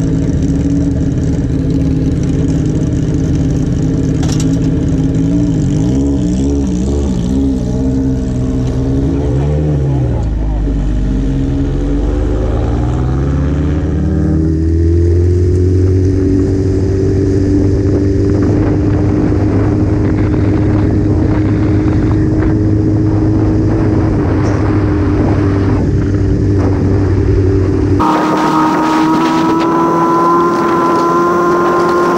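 Sport bike's inline-four engine idling steadily, its note wavering, then pulling away about halfway through and running at low, steady revs with wind noise. Near the end the sound cuts abruptly to a higher engine note.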